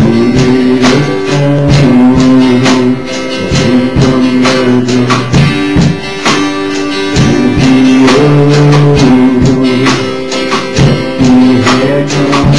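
Worship song played on guitar: strummed chords held steadily over a regular beat.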